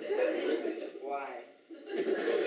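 Chuckling laughter mixed with a man's voice, with one short pitched vocal sound about a second in.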